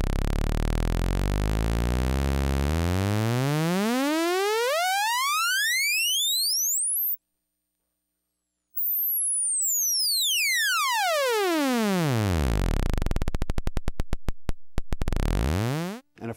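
A single oscillator of a Moog System 55 modular synthesizer, a low buzzy tone rich in overtones, swept smoothly up in pitch until it rises out of hearing for about a second and a half. It then sweeps back down until, near the end, it slows into a train of separate clicks that get further apart.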